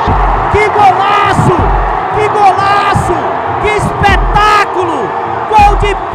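Football match broadcast audio: a voice calling out over steady stadium crowd noise, mixed with background music that has a deep bass beat.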